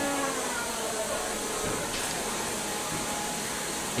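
Steady whirring, hiss-like noise from combat robots in the arena, with no distinct hits.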